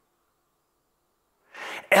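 Near silence for about a second and a half. Then a man draws a quick, audible breath, ending in a short click just before he speaks again.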